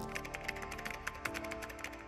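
Typewriter-style key clicks as a sound effect, a rapid run of about ten a second, over quiet sustained background music.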